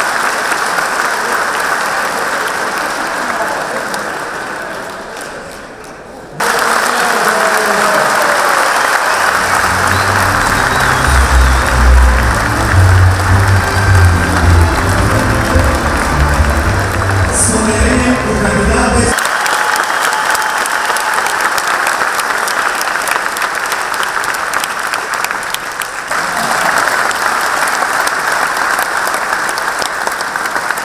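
Sustained applause from a large arena crowd. It fades a little, then cuts abruptly to louder applause. For about ten seconds in the middle, loud music with a heavy bass line plays over it, then it gives way to steady applause again.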